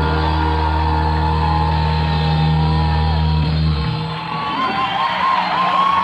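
A live rock band in a large hall holds a sustained low chord that cuts off about four seconds in, with crowd shouts and whoops rising over the end.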